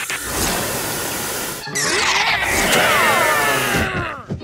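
Cartoon sound effects: a steady hiss for about a second and a half, then a loud swirling whoosh made of many falling tones that dies away near the end.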